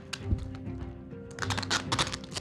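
Background music under a rapid run of small clicks and crinkles from hands wrapping a padded egg package, thickening about a second and a half in.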